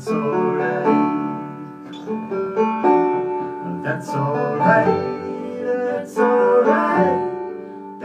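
Acoustic string band playing an instrumental passage, with banjo, acoustic guitar, fiddle and upright bass together.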